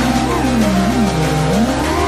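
FPV freestyle quadcopter's brushless motors (T-Motor F40 2400kv) and props whining, the pitch swooping down and back up as the throttle changes, over background music.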